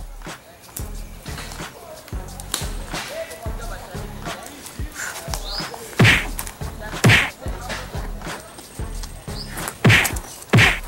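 Background music with a steady low beat, cut by loud punch sound effects: two hard whacks about six and seven seconds in and a third near the end.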